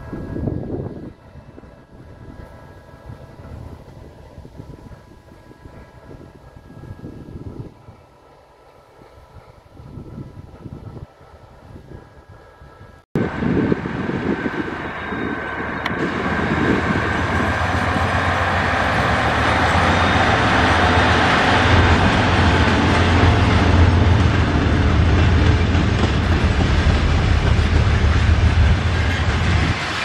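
Three ST40s diesel locomotives working in multiple pass close by, hauling a train of empty broad-gauge coal wagons: a deep engine drone with the clatter and rumble of the wagons. It starts suddenly about a third of the way in, after a quieter stretch, and keeps building.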